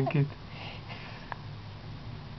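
A man's spoken word trails off, then a faint sniff through the nose and one small click over a low steady hum.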